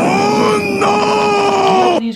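A loud, high held vocal cry, like a scream, sustained for about two seconds over a rushing noise and cut off suddenly at the end.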